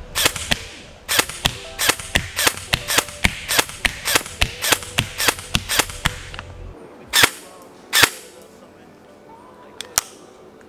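Airsoft rifle fired shot by shot, a steady run of sharp cracks about three a second. After a short pause it fires two louder single shots about a second apart.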